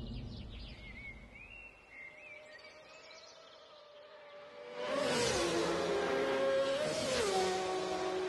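Birds chirping over a quiet road. About five seconds in, a racing motorcycle passes at high speed with a falling pitch, and a second one follows about two seconds later.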